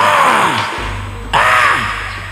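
Javanese gamelan music accompanying a stage fight: two loud drum strokes with a falling pitch, about a second and a half apart, over ringing metal and a low hum.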